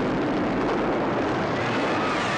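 A steady, dense roar from a film soundtrack's fire-and-destruction sound effects, with no single loud impact.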